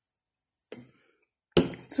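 A drinking glass set down on a table: a small knock about two-thirds of a second in, then a louder knock about a second and a half in.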